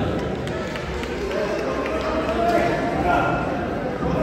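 Voices of spectators around the mat calling out and talking over one another in a large hall, with no clear words.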